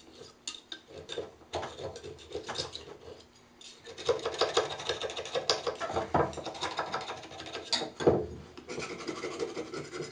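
A steel edge scraping along a wooden tool handle in quick repeated strokes, cleaning hardened Gorilla Glue squeeze-out off the wood. The strokes are sparse at first, then come faster and louder from about four seconds in.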